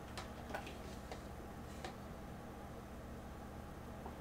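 A few faint, sharp clicks, about four in the first two seconds, over a steady low electrical hum.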